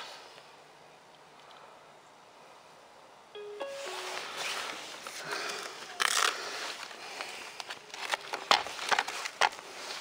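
Handling of a foam radio-controlled model plane's battery bay: rustling with several sharp clicks and knocks as the hatch is opened and the flight battery's plug is pulled and the pack lifted out. A short run of about three brief electronic beeps sounds about three and a half seconds in, just before the handling starts.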